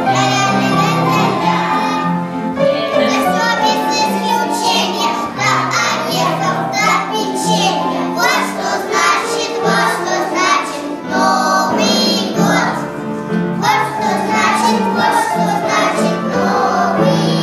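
A group of young children singing together over backing music with a steady bass line.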